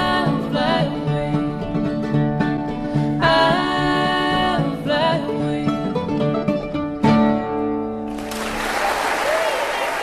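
Bluegrass gospel band with banjo and guitar playing the closing instrumental bars, ending on a held chord about seven seconds in. A steady rushing noise then comes in and carries on past the end.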